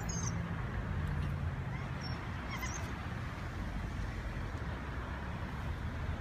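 Narrowboat's diesel engine running slowly, a steady low drone, with a few short high squeaks near the start and again about two and a half seconds in.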